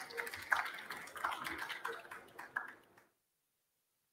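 Room noise in a small event space: scattered clicks and knocks with faint voices in the background. It cuts off abruptly to silence about three seconds in.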